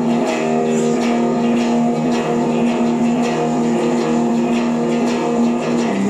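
Live rock band playing: electric guitar holding a sustained chord over bass, with the drum kit keeping time at about two hits a second.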